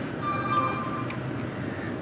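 Steady hum of a car cabin with the air conditioning fan running, with a faint held electronic tone through the first second.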